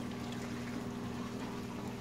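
Reef tank equipment running: a steady low hum of pumps with water trickling and flowing in the sump.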